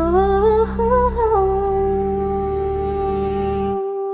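A cappella group singing: a female lead voice climbs in small steps, then holds one long note from about a second and a half in, over the group's low hummed chord. The low chord cuts out briefly near the end and comes back on new notes.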